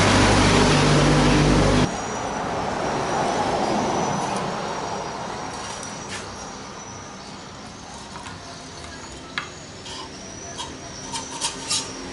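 A loud, steady low mechanical hum that cuts off abruptly about two seconds in, then a rush of noise that swells and fades. Near the end come several light clinks, a metal spoon tapping a plate.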